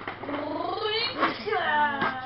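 A child's wordless high-pitched voice, sliding up and then down in pitch, turning into laughter near the end.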